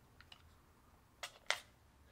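SIG P226 pistol being cleared by hand, its slide stiff: a few faint clicks, then two sharp clicks about a second and a half in as the slide and action are worked.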